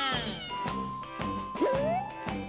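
Bouncy children's-show background music with a steady beat, over a high, cat-like cartoon voice. The voice glides down at the start and sweeps up again near the end.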